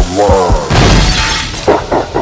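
Sound effects in a hip-hop intro: a loud crash like shattering glass about two-thirds of a second in, after a few short gliding voice-like sounds.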